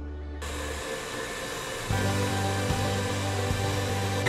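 KitchenAid stand mixer running, its beater whipping a bowl of body butter; the motor's steady noise and low hum grow louder about two seconds in.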